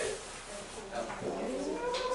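Young people's voices in a hall, with one long drawn-out high vocal call that glides up and holds steady through the second half.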